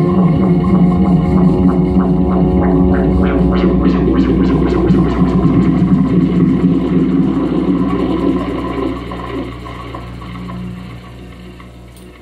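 A live band's closing held chord with a low droning tone, light quick ticks running through the middle, fading out over the last few seconds.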